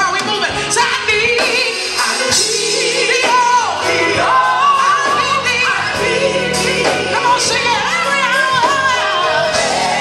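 Live gospel music: a female lead voice singing with vibrato, backed by female harmony singers and a band with bass, drums and electric guitar.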